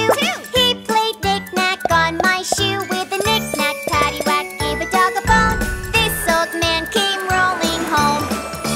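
Children's nursery-rhyme song: a voice singing a verse over a bright, bouncy instrumental backing with chiming, tinkly notes, and a quick swooping sound effect just after the start.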